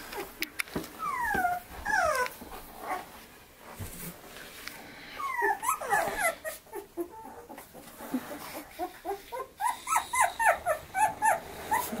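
Young boxer puppies whining: two falling cries about a second in, a cluster of cries around six seconds in, then a quick run of short cries near the end.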